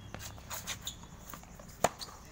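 A tennis ball struck by a racket: one sharp pop near the end, after a run of light taps from shoes and balls on the hard court.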